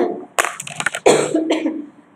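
A woman's voice making short sounds without clear words. A quick run of short, breathy bursts starts about half a second in, then a brief pitched sound falls away, much like a laugh or a cough.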